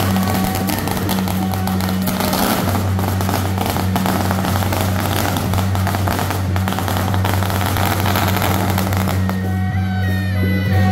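A long string of firecrackers crackling rapidly and without a break, thinning out near the end, over music and a steady low hum.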